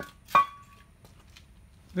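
Two short metallic clinks about a third of a second apart, the second louder, each leaving a brief ringing tone: steel open-end wrenches being picked up and knocking together.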